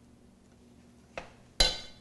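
A light click, then a sharp metallic clink that rings briefly just before the end: a metal spoon knocking against metal cookware.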